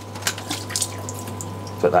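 Water dripping and splashing in a few short strokes in the first second as the valve block is pulled off the top of a Fluval FX2 canister filter. Under it runs a steady low hum from the filter, which is still running.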